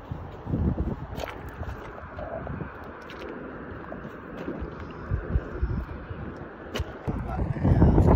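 Wind buffeting the microphone in uneven low gusts, with two sharp clicks, one about a second in and one near the end.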